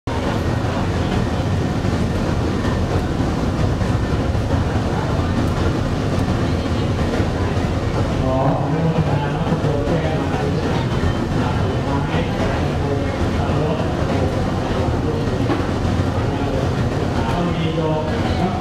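Cremation furnace burners and fire running with a steady, loud, low rumble. Faint voices come in over it from about halfway through.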